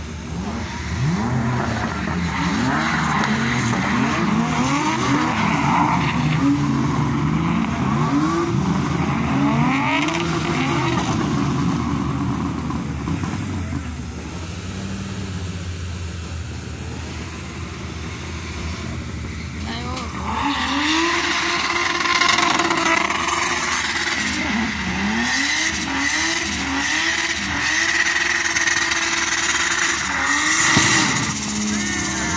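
A drift car's engine revving up and down over and over while its rear tyres spin and squeal; about two-thirds of the way in the tyre noise and revs grow louder.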